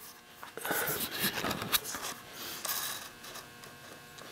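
Irregular rubbing and scraping with scattered light clicks: handling noise from the camera being moved in close under the milling machine's table.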